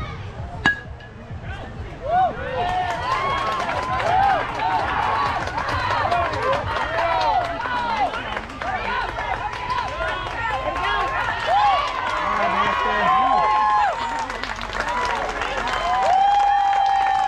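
A metal baseball bat hits the ball once with a sharp, briefly ringing ping about a second in. Then many voices of a crowd, adults and children, shout and cheer loudly and continuously as the ball is put in play.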